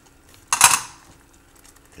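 One short, sharp clink of kitchenware about half a second in, the kind made by a small glass bowl or utensil knocking against a hard kitchen surface.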